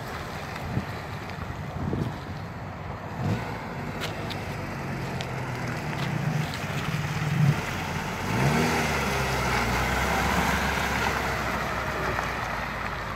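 Mini Cooper S Clubman's engine running as the car is driven slowly across a wet gravel lot, revving up in several short rises before pulling away. Tyres crackle on the gravel, with a few sharp clicks in the middle.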